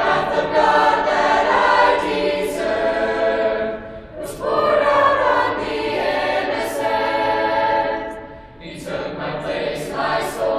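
A mixed youth chorus of teenage boys and girls singing a cappella in several voice parts. Sustained chords come in phrases, with short breaks about four seconds in and again near the end.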